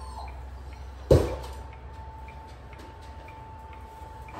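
A single sharp thump about a second in, over a steady high hum and faint regular ticking.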